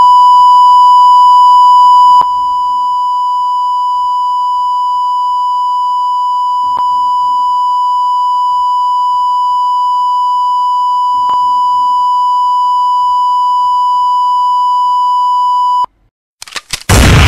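A steady, high-pitched electronic beep tone held unbroken for about sixteen seconds, a sound effect laid over the scene. It drops a little in loudness about two seconds in, with faint clicks every few seconds, and cuts off suddenly just before the end.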